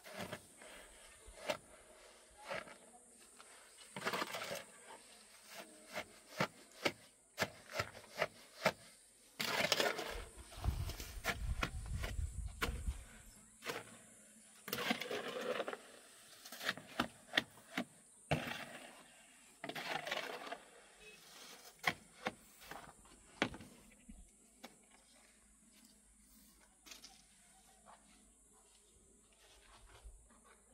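Irregular knocks and clicks with several short scraping passes, as of hand work with stones and tools on rock and earth; the longest scrape, with a low rumble, comes about ten seconds in, and it grows quieter after the middle.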